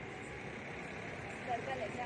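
Steady outdoor background noise, with a faint voice heard briefly a little past the middle.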